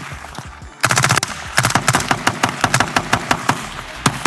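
AR-style rifle fired on its "giggle switch" (automatic fire selector): a quick burst of a few shots about a second in, then a long string of rapid shots, about six a second, stopping shortly before the end.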